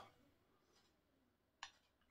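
Near silence: room tone, with one short, sharp click near the end.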